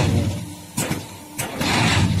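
QT4-18 automatic hydraulic block machine running under manual control. Its motor hums steadily under loud bursts of machine noise that stop and start: short bursts near the middle, then a loud burst from about one and a half seconds in.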